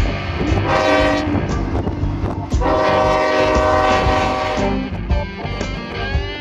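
Canadian Pacific freight locomotive's air horn sounding at a level crossing: a short blast, then a longer blast of about two seconds, over the low rumble of the passing train.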